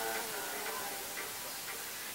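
A man's held sung note trails off at the start, then a sparse backing beat ticks about twice a second over a steady hiss.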